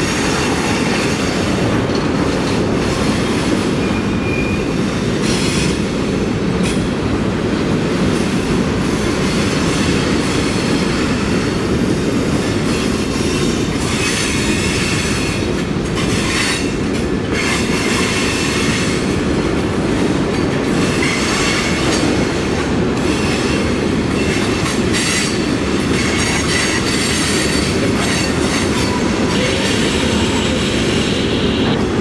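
Freight cars of a long mixed freight train rolling past: a steady rumble of steel wheels on the rails, with scattered clicks and clanks over the rail joints.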